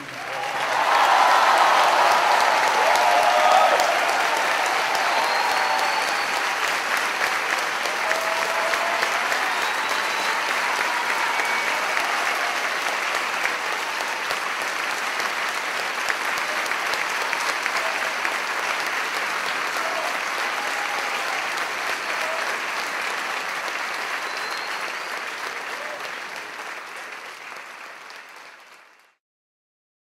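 Theatre audience applauding, with a few voices calling out over the clapping. The applause swells sharply in the first couple of seconds, holds steady, then fades and is cut off shortly before the end.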